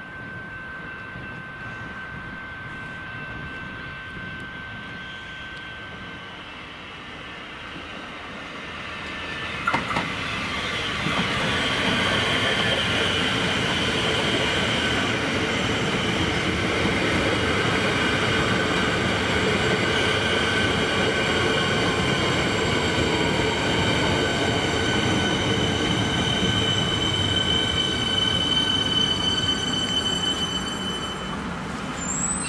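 Melbourne suburban electric train arriving at the platform and slowing to a stop, with a steady high-pitched whine and wheel squeal. Its approach is faint at first, then a sharp knock about ten seconds in, after which the train is loud and a tone slides downward in pitch as it slows.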